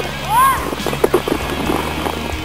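Music with steady low sustained notes. About half a second in, a voice briefly rises and falls in pitch, and a few short knocks follow about a second in.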